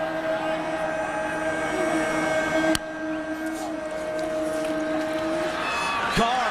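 Steady game-broadcast stadium sound under a sustained droning tone that holds one pitch until near the end, with a single sharp click about three seconds in.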